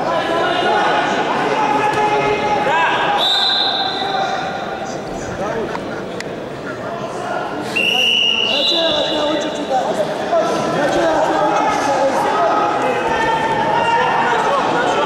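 Many overlapping shouting voices, coaches and spectators calling out during a combat sambo bout. Two short, high, steady whistle-like tones cut in, about three seconds in and again near eight seconds, along with a few sharp knocks.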